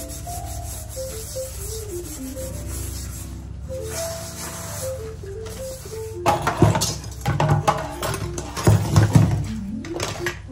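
Sponge scrubbing a soapy steel kadai: irregular rubbing strokes that turn loud from about six seconds in. Background music with a simple melody plays throughout.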